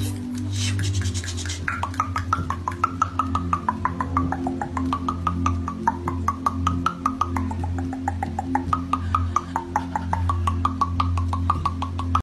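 Rapid, even hand-tapping on a person's chest, about six taps a second, over music with a steady low drone. A wavering higher tone rises and falls along with the taps.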